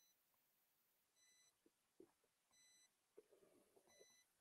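Near silence, with a faint short electronic beep repeating about every second and a half, three times.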